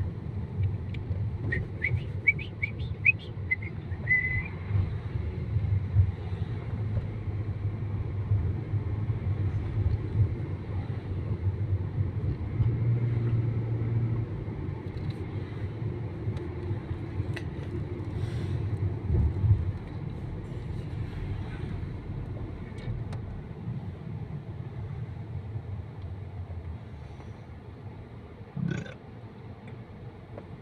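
Car cabin noise while driving in city traffic: a steady low rumble of engine and road. A few brief high chirps come in the first few seconds, and a single thump near the end.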